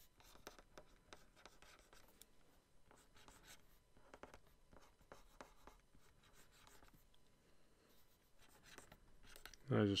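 Pen stylus scratching and tapping on a Wacom graphics tablet in short, irregular, faint strokes while line work is drawn.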